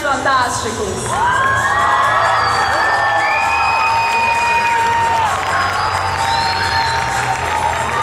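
Audience cheering and whooping, many voices at once, with several long drawn-out shouts.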